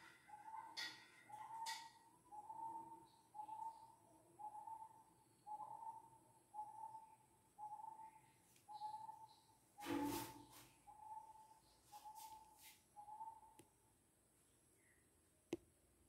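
A faint, high whistle-like note repeated at an even pace, about three every two seconds, stopping a couple of seconds before the end. A sharp knock comes about ten seconds in, and a brief click near the end.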